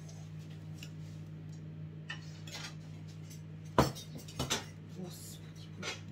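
A spoon clinking and knocking against a dish, several separate clinks with the loudest about two-thirds of the way through. A steady low hum runs underneath.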